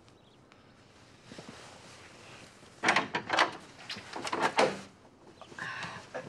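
A door being opened, heard as a run of knocks and rattles lasting about two seconds, starting about three seconds in after a quiet start.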